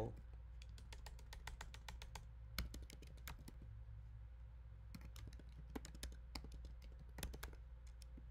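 Typing on a computer keyboard: a quick run of light key clicks, a short lull about four seconds in, then another run of keystrokes as a word is deleted and retyped.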